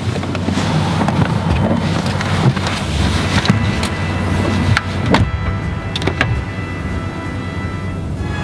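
Background music, with the rustling and clunks of a person climbing out of a car's passenger seat. The car door is opened and then shut, giving a few sharp knocks about five to six seconds in.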